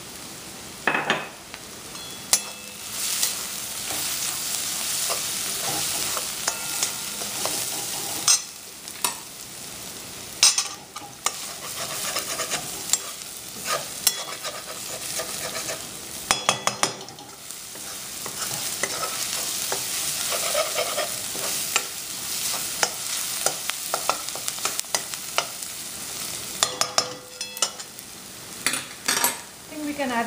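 Chopped onions sizzling in oil in a handleless metal kadai as they brown. A metal spatula stirs and scrapes them, clacking sharply against the pan every few seconds.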